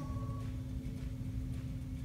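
Room tone: a steady low rumble with a faint, even hum and no distinct event.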